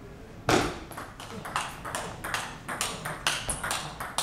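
Table tennis ball striking the bats and the table in a rally: a loud first hit about half a second in, then quick sharp ticks, about four a second.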